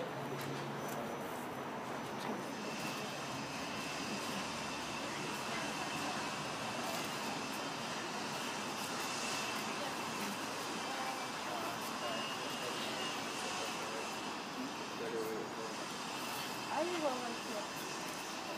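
Steady distant engine noise with a high whine, setting in a few seconds in and holding to the end, over outdoor background noise.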